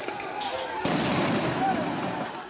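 Street riot: a din of distant shouting, with a couple of sharp bangs in the first second.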